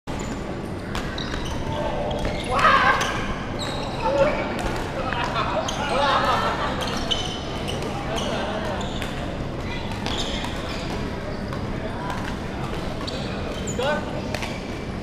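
Badminton play in a large echoing sports hall: sharp clicks of rackets hitting the shuttlecock and sports shoes squeaking on the wooden court floor, with people talking now and then.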